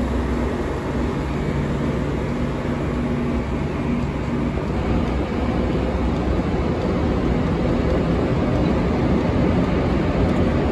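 Loud, steady rumble and hiss of high-speed trains standing at a station platform, with a low hum through the first half.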